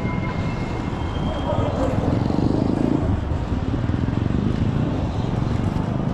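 Steady rush of wind on the microphone and street traffic noise from riding a bicycle along a city road, with a few faint thin tones near the start.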